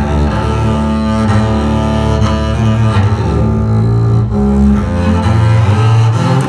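Solo double bass with gut strings, bowed arco: a run of sustained low notes with a rich overtone sound, changing pitch every second or so.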